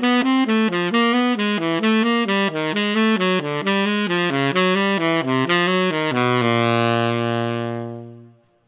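Solo saxophone playing a fast run of major-triad arpeggios, each begun from the fifth with a chromatic approach note and moving down by half steps through all twelve keys. The run ends on a long held low note that fades out near the end.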